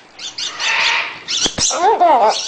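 Baby macaws calling: a run of short, scratchy squawks and chatter, a couple of sharp clicks about one and a half seconds in, and a wavering pitched call near the end.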